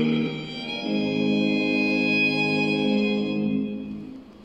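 Singers' voices holding a sustained chord. There is a brief break before one second, then a new chord is held steadily and dies away near the end.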